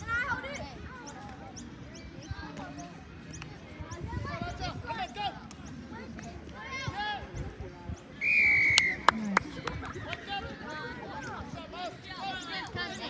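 A referee's whistle blown once, a short held blast about eight seconds in, the loudest sound, followed by a couple of sharp knocks. Distant shouts and chatter of players and spectators go on throughout.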